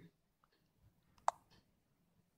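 A single sharp click about a second and a quarter in, with a few faint ticks around it, over otherwise near-silent room tone.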